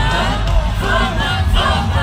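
Live pop concert in an arena: the band's song plays loud over the sound system with a heavy bass, under the crowd's screaming and cheering close around the phone.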